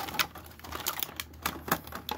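Sharp, irregular plastic clicks and snaps, about four in two seconds, as a small pocketknife blade cuts and pries at an action figure's plastic blister packaging.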